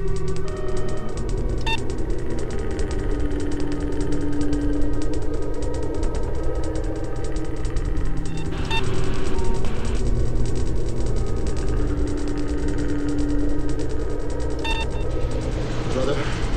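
Electronic background music: a deep low drone under long held tones and a fast ticking pulse, with a short bright chime-like accent three times.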